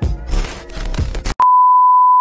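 Intro music plays and cuts off a little past halfway, then a loud, single steady test-tone beep sounds, the tone that goes with TV colour bars.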